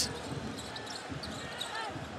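Basketball arena ambience during live play: a steady crowd murmur with sounds from the court.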